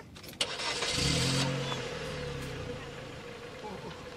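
Road and engine noise of a moving car with a steady hum. A sudden loud rush of noise starts about half a second in and eases off over the next second or so.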